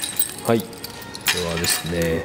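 Pearls clicking and clinking against each other as the strands are handled, in short light rattles, with brief murmured vocal sounds in between.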